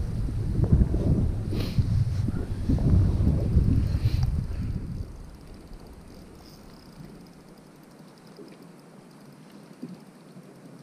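Wind buffeting the microphone, a loud low rumble for about five seconds, then it falls away to faint wind and water noise.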